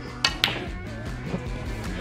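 Two sharp clicks of a snooker shot, about a quarter and half a second in: the cue tip striking the cue ball and then balls colliding, over steady background music.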